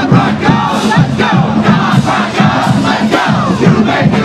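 College marching band on the march: many voices shouting and chanting together over a steady beat that falls about twice a second.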